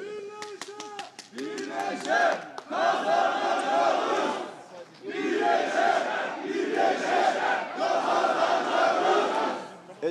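A crowd of supporters chanting a slogan in unison, in two long loud stretches with a short break between them, after a few sharp claps at the start.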